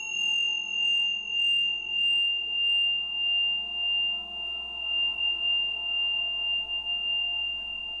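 A single high, steady ringing tone starts with a click and rings on unchanged. A fainter higher tone and a few quick high blips fade out after about three seconds. Beneath it is a soft bed of sustained background music that swells and fades.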